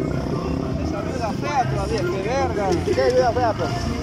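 Indistinct voices over the low, steady running of a motorcycle engine at idle.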